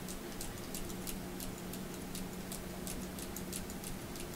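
Faint, quick, repeated clicking flutter of a hand-held fan waved rapidly back and forth in front of the face, over a low steady hum.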